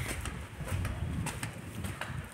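Pigeons or doves cooing, a low repeated murmur, with a few soft footstep scuffs on the sandy floor.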